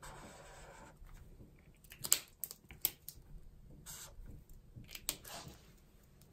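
Zebra Mildliner highlighter's chisel tip dragged across planner paper in a faint scratchy stroke lasting about a second, then scattered light clicks and taps as the marker is capped and handled.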